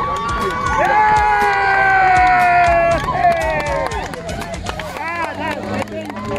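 Excited spectators shouting and laughing, with one long held cheer lasting about two seconds followed by bursts of laughter, over crowd chatter.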